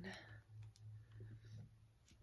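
A few faint clicks from plastic-packaged paintbrushes being handled, over a steady low hum.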